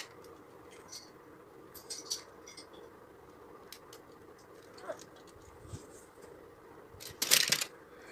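Plastic Lego bricks clicking faintly now and then as they are handled and fitted together, then a louder half-second clatter near the end as the homemade Lego spinning top is let go and tips over without spinning.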